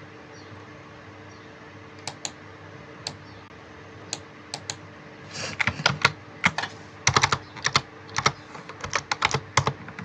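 Computer keyboard keys clicking as code is typed and edited: a few scattered keystrokes from about two seconds in, then a quick, dense run of keystrokes through the second half. A faint steady hum lies underneath.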